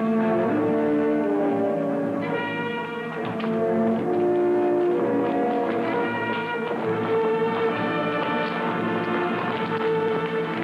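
Orchestral film score with brass to the fore, playing held chords that change every second or so.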